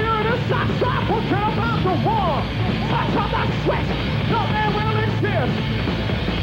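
Live heavy metal band playing at full volume, drums under the rest of the band, with a high melodic line sliding and bending up and down in pitch.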